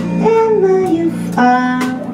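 Live blues band playing a slow number: a held lead melody line that glides down in pitch over electric bass, guitar and drums, with a cymbal hit near the end.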